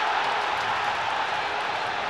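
Stadium crowd cheering a goal just scored, a steady, even noise of many voices.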